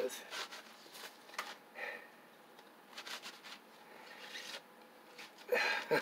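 Soft scrapes and scattered light clicks of a cardboard box of colored pencils being handled, with the pencils shifting inside as one is dug at.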